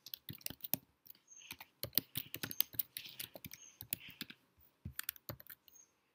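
Typing on a computer keyboard: a run of quick keystroke clicks at uneven spacing.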